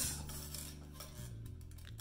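A faint steady low hum in a pause between words; no distinct sound event stands out.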